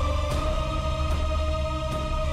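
Background score music: sustained held tones over a deep, steady bass drone.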